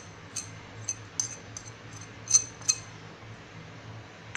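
Light, sharp clinks of a ceramic plate knocked against the rim of a bowl as ground spices are tapped off it: about a dozen scattered taps, the two loudest a little past halfway. A faint steady low hum runs underneath.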